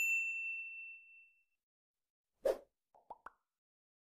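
Sound effects for a subscribe-button animation: a single bell-like ding that fades over about a second and a half, then a short pop about two and a half seconds in, followed by two quick faint clicks.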